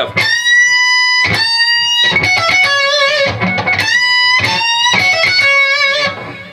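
Electric guitar playing a lead lick high on the neck. The first two sustained notes are bent up and held, and from about two seconds in a quicker phrase of changing and bent notes follows.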